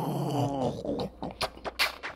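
A voice making wordless sounds: a held, wavering vocal tone that breaks off about half a second in, then a run of sharp clicks and pops from the mouth.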